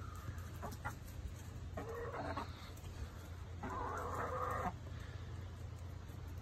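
Backyard hens calling: a short call about two seconds in and a longer one, about a second long, near four seconds in.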